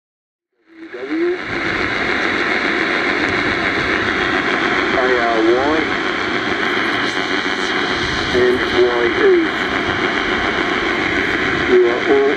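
Steady hiss and static from an HF transceiver's loudspeaker on the 160 m (1.8 MHz) band, starting suddenly under a second in, with a few brief warbling tones over it about halfway through and again near the end.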